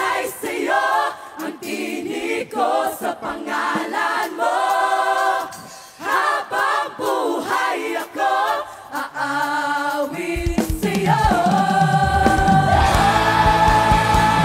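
Gospel choir and vocal group singing a worship song with the band dropped out, voices alone. About ten seconds in, drums and bass come back in under a long held note.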